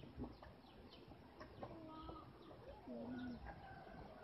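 Faint bird calls: repeated short, high, falling chirps, with a few longer, lower-pitched calls in the middle.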